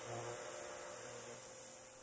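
Faint, steady hiss of a pressure washer spraying water, with a low hum beneath it, fading out gradually.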